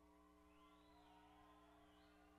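Near silence: a faint steady hum, with a very faint wavering sound in the middle.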